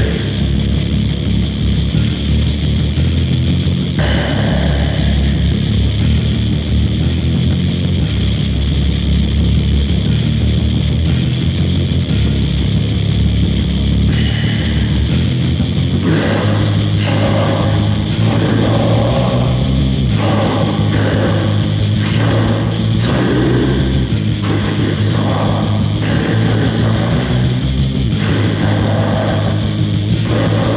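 Metal demo recording: loud, dense, distorted guitar riffing with bass and drums. About halfway through, the riff turns choppy, in stop-start blocks.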